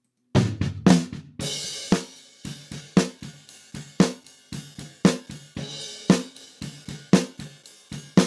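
Close-miked snare drum track from a live kit played back on its own: a strong snare hit about once a second, with quieter hi-hat ticks, kick and a cymbal splash in between. The in-between sounds are mic bleed from the rest of the kit into the snare microphone.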